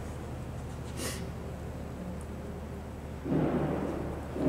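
Quiet room tone with a steady low hum, a short faint hiss about a second in, and a brief muffled, murmur-like sound near the end.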